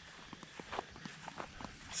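Faint, irregular soft steps of people walking on grass, a few quiet taps spread through the moment.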